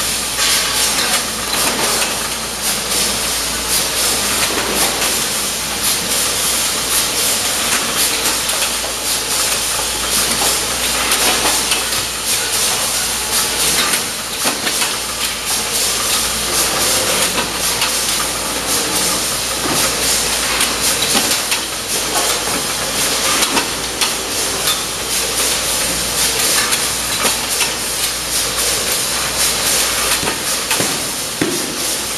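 Automatic carton packing machine running over a roller conveyor: a loud, steady hiss with frequent clicks and knocks.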